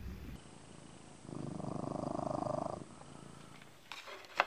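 Ginger house cat purring for about a second and a half in the middle, a rapid, even pulse.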